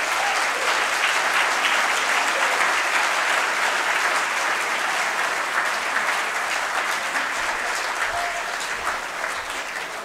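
Audience applauding: a sustained round of clapping that swells in the first couple of seconds and slowly tapers off toward the end.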